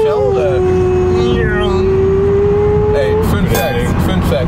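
Steady road and engine noise inside a moving car's cabin, under a long held tone that slowly drops in pitch and stops about three seconds in.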